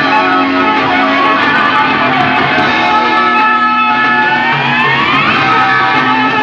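1970s progressive rock band playing live, with sustained chords and a pitch glide rising from about three and a half to five seconds in. It is an analog cassette recording with its top end dulled.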